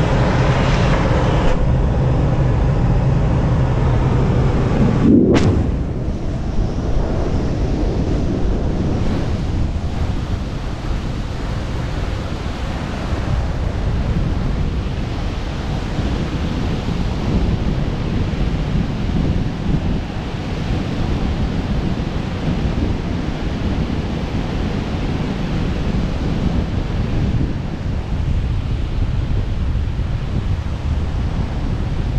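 Steady air rush inside a glider cockpit with a low hum, then a sharp knock about five seconds in, after which wind buffets the camera's microphone held out in the airflow beside the canopy.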